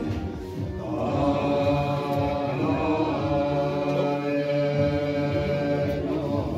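Several voices chanting Buddhist prayers together in a steady, droning recitation, starting about a second in.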